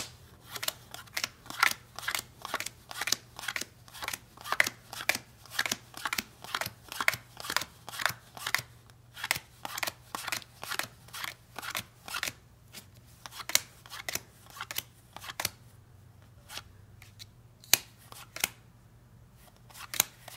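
Game cards dealt one at a time off the deck onto a pile as they are counted, each with a short, crisp snap, about two a second. The snaps thin out to a few near the end.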